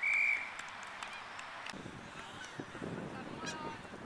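One short, steady blast of an umpire's whistle right at the start, the loudest sound. After it comes a murmur of distant voices from around the ground.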